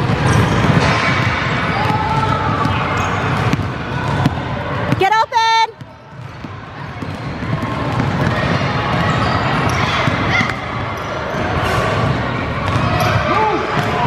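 Basketball dribbled and bouncing on a hardwood gym floor during a youth game, with many short knocks over a hall full of voices. A brief pitched tone sounds about five seconds in, then the level drops suddenly before the game sound returns.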